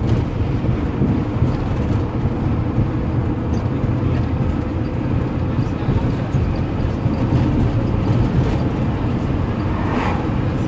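Steady engine and road noise of a moving vehicle, heard from inside the cabin.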